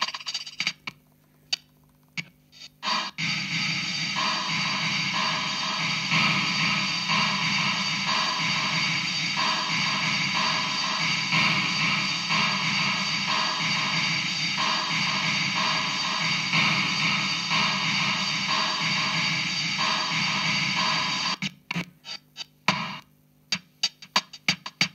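A Casio CZ-230S keyboard's Bossa Nova rhythm, with its playing, run through an Alesis Midiverb 4 effects preset. From about three seconds in the processed sound is a dense, sustained wash with a steady repeating pulse, and it cuts off sharply a couple of seconds before the end. Near the end a drier, clicking percussion pattern starts on the next preset.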